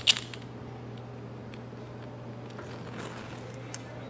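A lighter clicking a couple of times at the very start, then a low steady hum with a few faint ticks while a small pile of gunpowder is lit.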